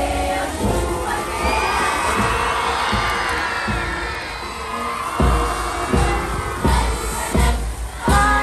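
Large crowd, many of them children, cheering and shouting as a national flag is hoisted, a swell of many voices with rising shouts.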